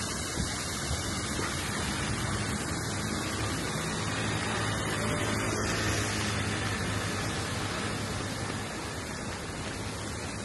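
Steady hiss of rain on a wet street, with a low rumble that swells and fades midway.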